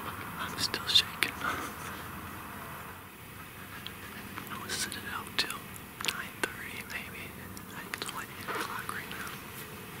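A man whispering, with a sharp click about a second in and a few lighter ticks.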